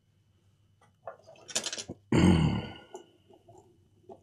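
A man draws a quick, hissing breath, then lets out one loud, explosive cough-like burst from the throat that trails off within about a second.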